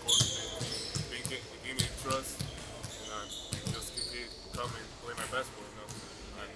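Basketballs bouncing on a hardwood gym floor, a quick irregular series of thuds, mixed with short high squeaks of sneakers on the court.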